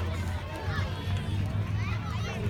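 Several people's voices talking indistinctly, over a steady low rumble.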